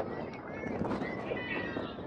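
High-pitched girls' voices shouting and calling out on a soccer field, with one drawn-out call near the end, over a steady background of outdoor crowd noise.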